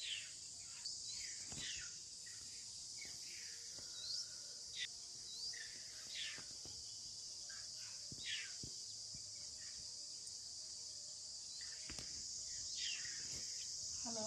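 A steady high-pitched insect chorus, like crickets or cicadas, with scattered short bird calls over it, many sweeping down in pitch.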